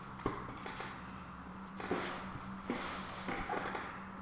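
Soft paper rustling and light taps of a hand turning and smoothing the pages of a book on a table, with a sharp tick about a quarter second in and a brief rustle around the middle, over a faint steady hum.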